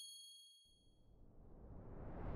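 Fading tail of a bright, bell-like chime from a logo sound effect, several high tones ringing out and dying away within about the first second. A faint low whoosh then swells up through the second half.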